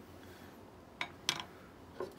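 Two light clicks about a third of a second apart, about a second in, from handling a small glass seasoning jar just after its lid has been twisted off.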